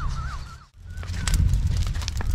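A bird calling with a short, quickly repeated wavering note, which breaks off about half a second in. After a brief gap there is a low rumbling noise with a few scattered clicks.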